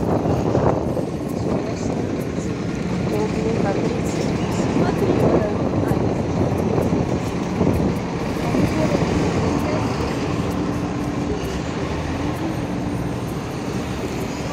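City street traffic: a steady rumble of vehicles passing on the road, with a low engine hum coming through in the second half.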